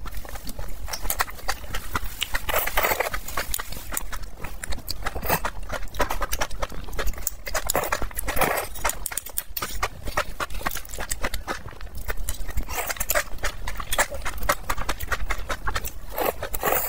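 Close-miked eating of saucy enoki mushrooms: wet chewing and lip-smacking clicks, with about five louder slurps spread a few seconds apart as strands are sucked into the mouth.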